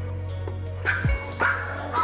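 Small dog barking three times in quick succession, about half a second apart in the second half, at the front door as visitors arrive, over background music with a steady beat.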